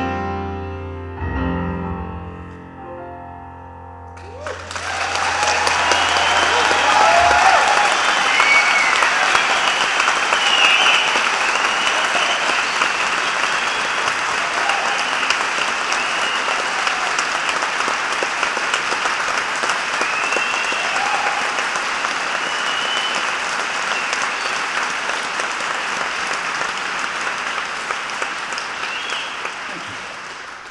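The last chord of a grand piano ballad rings out and fades. About four seconds in, loud audience applause and cheering begin and run on steadily, with a few whoops rising above the clapping.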